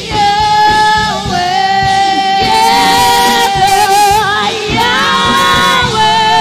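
Female worship singers singing a gospel praise song into microphones, with long held notes, over instrumental accompaniment with a steady beat.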